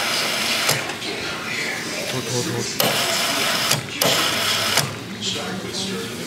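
Soda fountain pouring cola into a foam cup in a few separate spurts, the stream hissing and the cola fizzing, over background voices.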